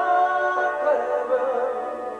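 Live rock band music in a soft passage: sustained keyboard chords under a held melody line that shifts note at the start and wavers partway through, with no drum hits.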